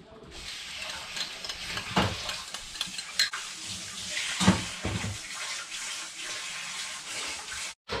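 A fork stirring beaten eggs in a bowl, with a few clinks against the bowl, then the eggs poured into a frying pan on the stove, over a steady hiss.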